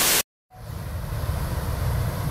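A brief loud burst of TV-static noise from a glitch transition, cut off by a moment of dead silence. Steady outdoor noise then fades in, a low rumble with hiss, slowly growing louder.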